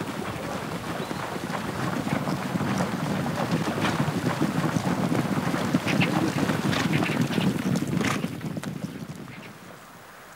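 A herd of horses galloping through shallow river water: a dense jumble of splashing and hoof strikes. It fades away over the last two seconds.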